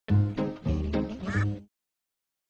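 A quick run of duck quacks, about five of them, with music under them. The sound cuts off suddenly about one and a half seconds in.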